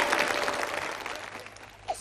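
Audience applauding, the applause dying away over about two seconds. A man's voice starts just at the end.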